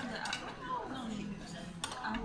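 Tableware clinking: a metal ladle and chopsticks knocking against a metal hot pot and ceramic dishes, a few sharp clinks near the start and another just before the end.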